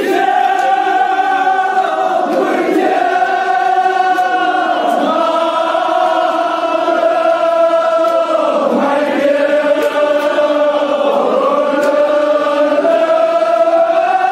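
Men's voices chanting together in unison, holding long drawn-out notes that slide from one pitch to the next: a Shia mourning chant for Imam Hussain, sung by the gathering.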